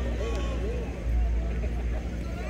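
Scattered voices of players and spectators talking at a distance, over a steady low rumble that swells about a second in.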